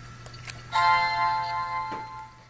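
A Medtronic pump programmer powering on: a short click, then a start-up chime. The chime is a chord of several steady tones that begins about three-quarters of a second in and slowly fades away.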